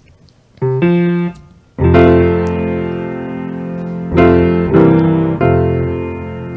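Piano chords played as the opening of a children's sing-along song: a couple of short notes about half a second in, then a full chord held and fading from about two seconds, with fresh chords struck three more times in the last two seconds.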